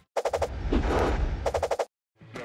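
Transition sound effect for an animated graphic: a rapid stutter of clicks, a swelling rush of noise in the middle, then another rapid stutter that cuts off suddenly just before the end.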